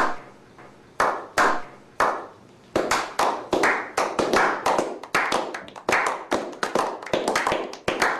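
A few people clapping their hands: slow single claps about a second apart at first, quickening after a couple of seconds into a steady run of claps several a second.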